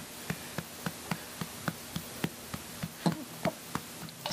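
Hand patting an infant's back over his clothing, steady and even at about three to four pats a second, to bring up a burp in the seated burping position. A brief small vocal sound comes about three seconds in.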